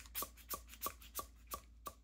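A pen tapping lightly on a notebook page, about six quick taps evenly spaced at roughly three a second.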